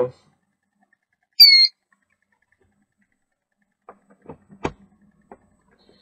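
A Biolis vortex-therapy generator gives one short, high electronic beep as it is switched on, about a second and a half in. A few faint clicks follow later.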